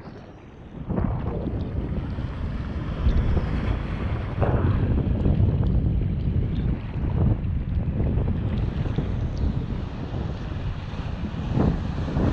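Ocean surf swirling and breaking around a camera held at the water's surface, with wind rumbling on the microphone. The wash comes in surges every second or two after a quieter first second.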